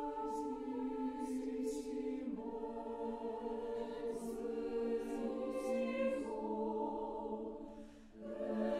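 Mixed chamber choir singing slow, sustained chords, with hissing 's' consonants standing out between notes. The chord shifts twice, and the phrase tapers away near the end.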